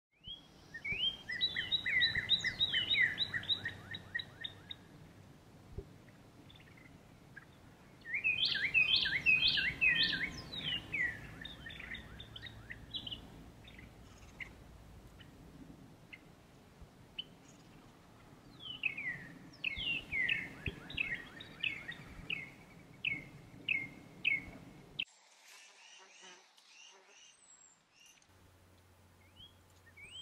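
A songbird singing in three bouts of quick, falling chirps, each a few seconds long, over a faint outdoor background. The song stops about five seconds before the end.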